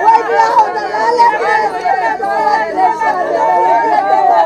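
A group of women mourners keening together, many voices overlapping in a continuous wailing lament with cries of 'wey bela'.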